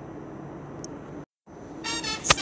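Steady low hum of an NS ICM (Koploper) intercity electric train standing at the platform. The sound cuts out briefly about two-thirds of the way in, and a pitched tone starts just before the end.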